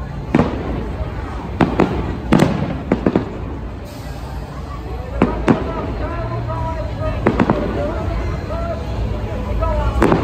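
Aerial fireworks bursting: a run of about ten sharp bangs, several coming in quick pairs, with short lulls between volleys.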